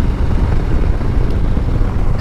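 2021 Harley-Davidson Street Bob's Milwaukee-Eight 114 cubic-inch V-twin running steadily at cruising speed through its new air cleaner, with wind rush on the microphone.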